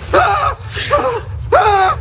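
A young man's startled gasps and cries, three short bursts of voice, over a low steady rumble.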